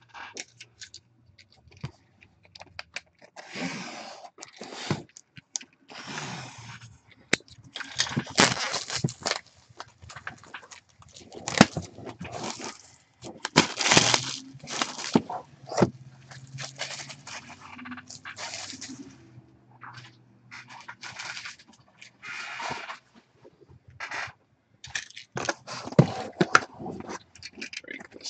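Plastic shrink wrap being torn and crinkled off a cardboard box and the box being handled: a long run of irregular crackling rustles broken by sharp clicks and scrapes.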